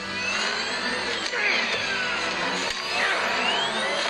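Whining, whirring engines of a sci-fi hovercraft with rotor fans, several tones sweeping up and down in pitch as the craft swerves.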